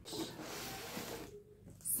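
Soft rustling and handling of a cardboard box wrapped in tape and plastic film, lasting about a second, then dying away.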